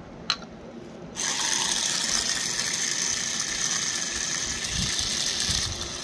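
Toy stand mixer's small battery-powered motor and plastic gears running steadily. A click comes just before it, and it starts about a second in and drops away near the end.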